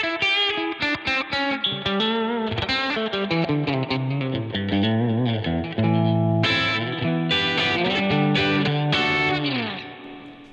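Electric guitar (a Fender Stratocaster on its bridge pickup) played through an Axe-FX II clean preset with a Super Verb amp model and reverb, giving a bright lead sound. It plays a quick run of single notes, then held notes with vibrato, and ends with a slide down that fades out.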